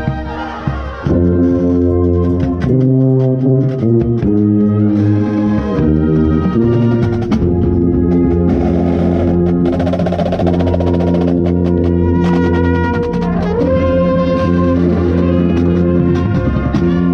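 Drum corps brass line playing loud sustained chords, with the deep contrabass bugles right beside the microphone and drum hits underneath. The full ensemble comes in about a second in, and a rising slide into a new chord follows near the end.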